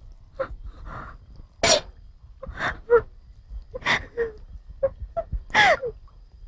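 A person sobbing: a series of short, breathy gasps and whimpers, the loudest about two seconds in and just before the end, the last one falling in pitch.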